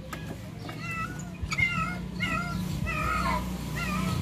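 An animal calling over and over: five or six short, high calls that each bend in pitch, over a steady low hum.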